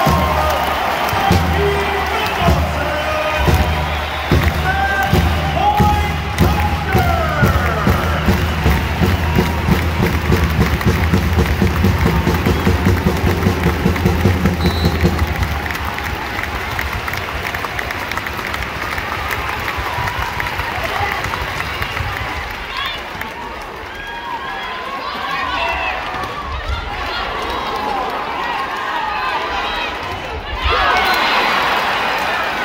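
A pep band with drums and cymbals plays a rhythmic tune over a cheering arena crowd for the first fifteen seconds or so. Then the band stops and the crowd's noise carries on, rising again near the end as play goes on.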